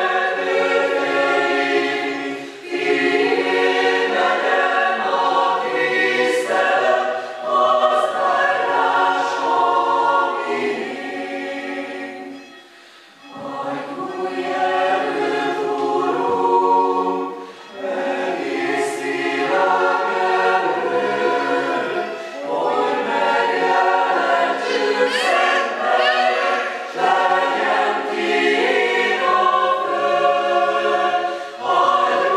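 Mixed choir of women's and men's voices singing in parts, phrase after phrase, with a short pause for breath about halfway through.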